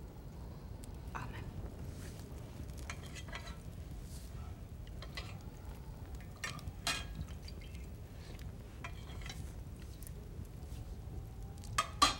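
Spoons clinking and scraping against bowls at irregular moments as people eat, over a low steady room hum.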